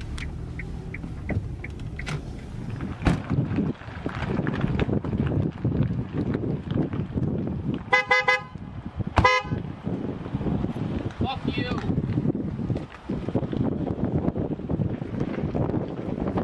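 Car horn, two short honks about a second apart, the first a little longer than the second.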